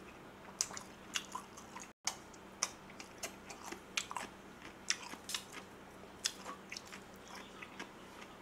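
A person chewing and biting food close to the microphone, with irregular sharp crunches and clicks throughout. The audio drops out completely for a moment about two seconds in.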